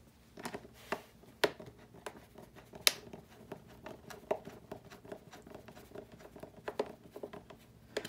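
Scattered light clicks, taps and rubbing from hands working a carbon-fibre tailpipe into the foam fuselage of a model jet, with the two sharpest clicks about a second and a half and three seconds in.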